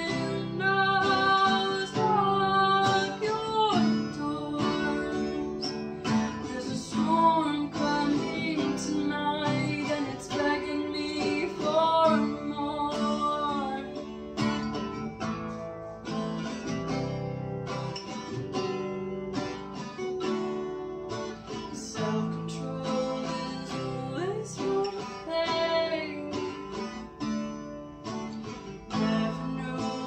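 A woman singing while strumming chords on a steel-string acoustic guitar.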